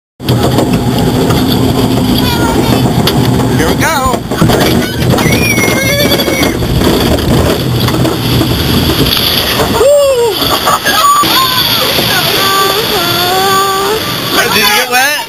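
Rushing, splashing water around a flume-ride boat moving along its water channel, loud and steady, with voices calling out now and then over it.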